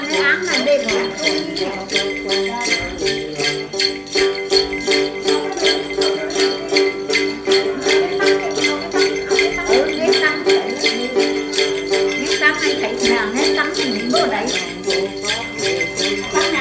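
Tày then music: a đàn tính gourd-bodied lute plucked over and over, with a cluster of small jingle bells (xóc nhạc) shaken in a quick, steady rhythm.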